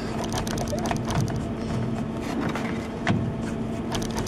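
Steady hum of running machinery with one constant low tone, under scattered light clicks and taps of small metal parts, the laser cutter's lens holder, being handled and refitted.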